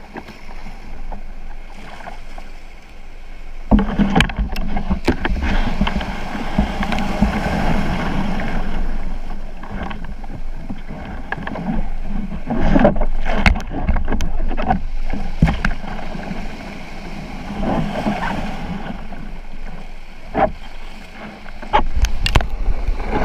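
Choppy surf washing and splashing against a sea kayak's hull while it is surfed in to the beach. The noise surges suddenly about four seconds in, with sharp splashes and knocks scattered throughout.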